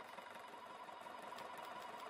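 Electric domestic sewing machine running steadily, sewing an overcast zigzag stitch along a raw fabric edge to keep it from fraying.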